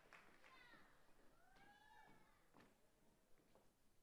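Near silence, with faint, indistinct voices in the background.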